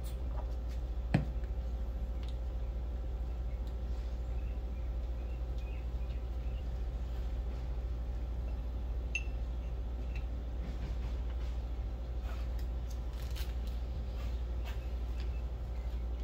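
Steady low room hum with faint, scattered clicks and taps from a connecting rod and piston being handled on a workbench; one sharper click comes about a second in.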